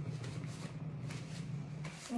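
Crumpled paper towel rustling as hands are rubbed and wiped in it, with a steady low hum underneath.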